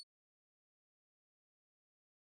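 Near silence: the audio track is blank.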